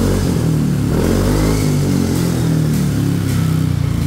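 Yamaha NMAX 155 scooter's single-cylinder engine running through a newly fitted SKR slip-on racing exhaust with a small round silencer, the revs rising about a second in and then wavering as the throttle is worked. The note is not too shrill but still has a clear exhaust sound.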